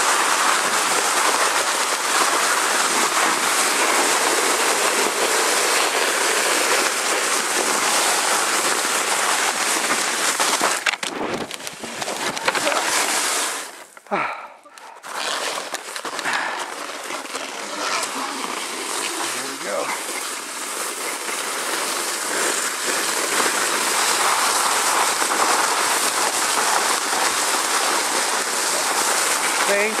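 Sled runners hissing and scraping over packed snow at speed, a steady loud noise that drops away for a couple of seconds about halfway through, then picks up again.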